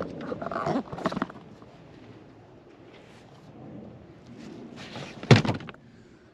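Rustling handling noise at first, then one sharp, loud thunk a little after five seconds in.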